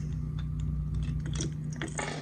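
Light, irregular clicks and rustles of hard plastic fishing lures being handled by a hand in a nitrile glove, over a steady low hum.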